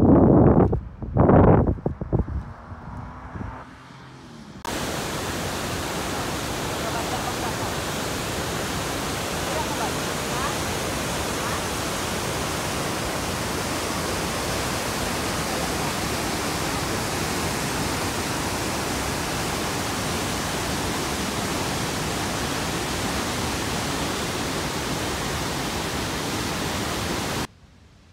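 Large waterfall's steady rushing noise, starting abruptly about five seconds in and cutting off suddenly just before the end. A few brief loud sounds come before it in the first two seconds.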